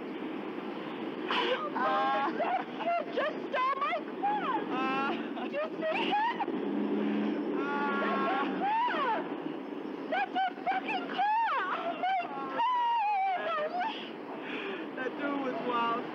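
Two women talking excitedly and laughing over a steady hum of street traffic, with a low steady drone for a couple of seconds in the middle.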